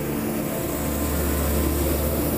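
Steady running noise from hot air balloon inflation equipment, a low engine-like hum under a broad rushing noise.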